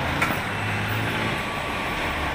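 Honda Click 125's in-tank fuel pump priming as the ignition is switched on: a click, then a low steady hum for about a second that stops. The pump running shows it is getting power.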